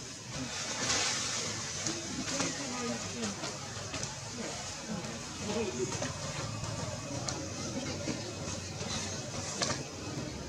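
Outdoor ambience with faint, indistinct voices in the background and scattered light clicks and rustles.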